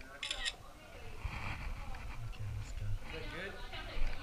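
Faint, indistinct talk, with a short hiss about a third of a second in and low rumbling handling noise from the camera as phones are passed between hands.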